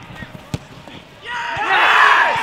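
A football kicked with a sharp thud about half a second in, then from a little past a second loud shouting and whooping from players as a goal goes in, rising to the loudest point at the end.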